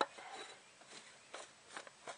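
Oil filter housing cap on a VW 1.9 TDI being screwed on by hand, a few faint clicks and scrapes as its thread turns.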